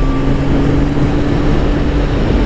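Kawasaki Ninja ZX-10R's inline-four engine running at a steady cruise, a constant even drone with heavy wind rush over the microphone.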